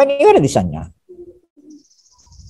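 A man's voice speaking a brief drawn-out phrase in the first second, then two faint short low tones and a faint high steady tone near the end.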